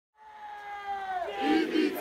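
Crowd of football supporters chanting in unison: a long held call that drops in pitch about a second in and grows louder into massed shouting.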